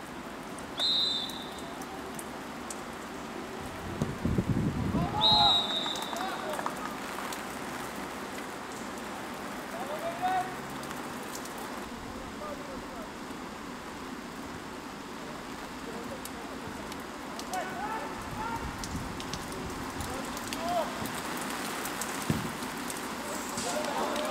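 A referee's whistle blows twice, briefly, about a second in and again about five seconds in, around the taking of a penalty kick that is scored. Around the second whistle there is a loud low rumbling burst and players shouting, with further scattered shouts later over a steady background hiss.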